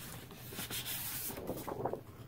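A large sheet of patterned paper being slid out of its cellophane-wrapped pack: a dry, uneven rubbing and rustling of paper against paper and plastic.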